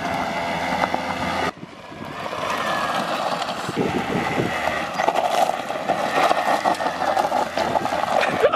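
Small moped scooter engine running at high revs. It drops off suddenly about a second and a half in, then builds back up as the scooter skids over loose gravel, with a rattle of stones and dirt under the spinning rear wheel near the end.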